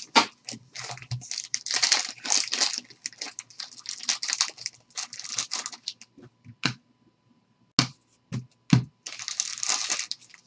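Black plastic card-pack wrapper being crinkled and crumpled by hand in irregular bursts of crackle. A few sharp knocks sound about two-thirds of the way in, then more crinkling.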